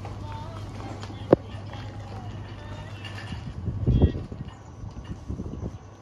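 Faint background voices over a steady low hum, with one sharp click about a second in and a louder low thump near four seconds.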